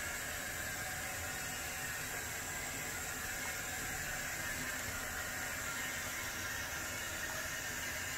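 A steady, even hiss that holds at one level with no breaks.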